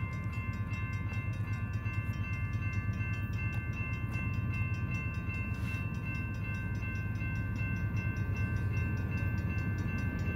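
Low, steady rumble of an approaching BNSF diesel freight train, with several steady high-pitched tones held over it.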